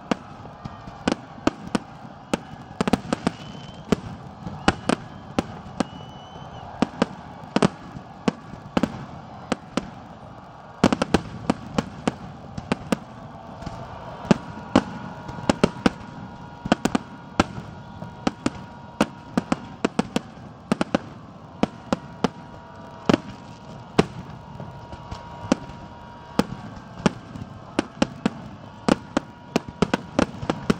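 Aerial fireworks shells bursting in a rapid, irregular string of sharp bangs, several a second, over a continuous background crackle and rumble.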